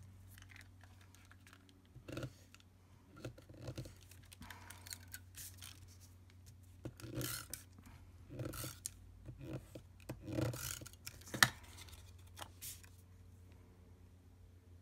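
Cardstock pieces rustling and scraping as they are slid and pressed on a craft mat, with a tape runner rolling adhesive onto paper; a sharp click about three-quarters of the way in is the loudest sound. A low steady hum lies underneath.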